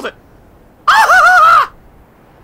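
A cartoon pony's voice giving one high-pitched, wavering wordless cry of under a second, a shivering reaction to the cold of the ice water.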